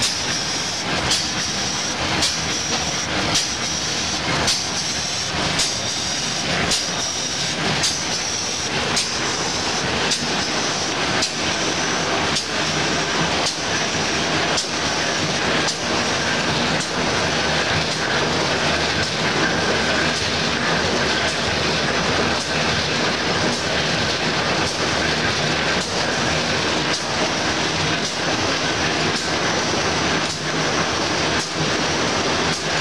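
Single-colour printer with rotary die cutter for corrugated board running: a steady mechanical clatter with a sharp clack about once a second.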